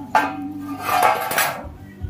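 Sheet-metal tray knocked down onto a concrete floor: a clank with a short metallic ring just after the start, then a longer rattling scrape about a second in as the tray is shifted on the floor.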